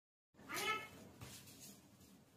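A cat meowing once, a short call about half a second in, after a moment of dead silence at the start.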